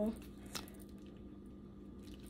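Silicone mold being flexed and peeled off a cured resin piece: faint squishing handling, with one small sharp click about half a second in.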